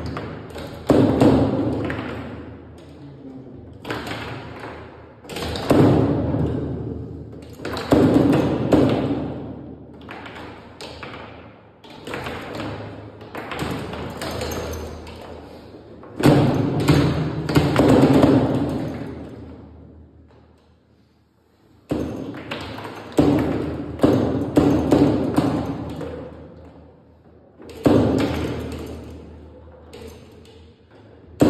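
Foosball game in play: sharp knocks of the ball being struck by the plastic players and banging off the table walls, at irregular intervals and each ringing out briefly, with a short lull a little past two-thirds of the way in.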